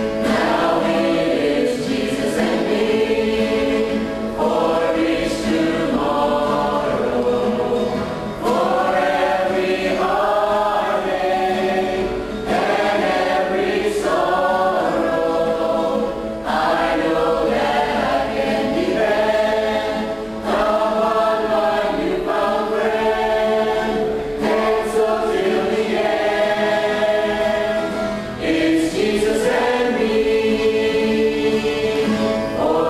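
A small mixed choir of men's and women's voices singing a worship song together, in phrases of about four seconds with short breaks for breath between them.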